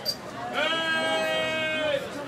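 A long drawn-out vocal call from a person's voice, sliding up at its start and then held on one pitch for about a second and a half, over crowd chatter.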